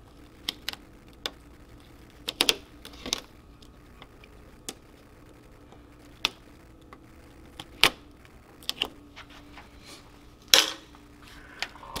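Scattered small clicks and ticks of a weeding pick picking and lifting waste heat transfer vinyl off its carrier sheet, with a brief louder rustle about ten and a half seconds in.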